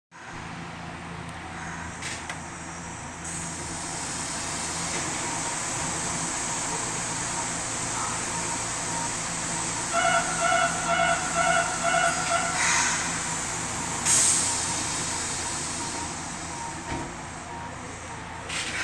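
Interior of a Nagoya Municipal Subway 3000 series train car running between stations: steady rumble and hiss of the wheels and traction gear, swelling through the middle. About ten seconds in, a pitched beep repeats several times for a couple of seconds, followed by two short sharp hisses.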